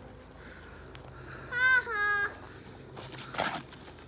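A short, high-pitched two-part call about a second and a half in, then a brief burst of rustling in the leaves and brush near the end as a boy jumps up at a low tree branch.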